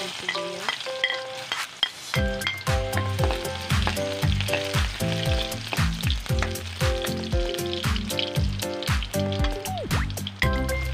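Minced garlic sizzling as it fries in oil in a pan, stirred and scraped with a metal spatula, with short clicks of the spatula on the pan. Background music with a steady bass beat comes in about two seconds in.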